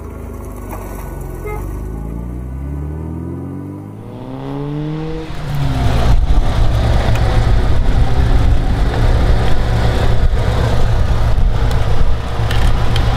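Classic sports car engine speeding up, its pitch rising over the first few seconds. From about five seconds in, a car engine runs loud and close with a steady low rumble.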